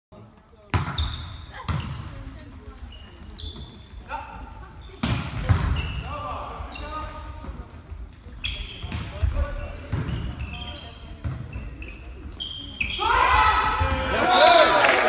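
Volleyball rally in an echoing sports hall: a string of sharp ball strikes from the serve, passes and attacks, with short shoe squeaks on the court floor between them. Near the end the point is won, and players and spectators break into loud shouting and cheering.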